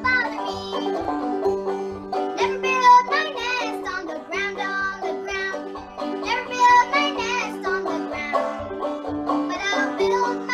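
Banjo picked in a steady rhythm under a young girl singing the melody of an old-time song.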